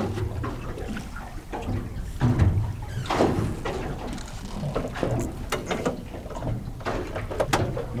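Water lapping against the hull of a small boat sitting on the sea, with a few short knocks.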